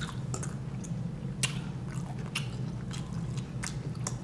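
Close-up chewing of rotisserie chicken, with irregular wet smacks and clicks of the mouth, over a steady low hum.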